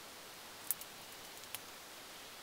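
A few sharp clicks of a marker pen on a whiteboard against a faint room hiss: the loudest about two thirds of a second in, a softer one just after, and another about a second and a half in.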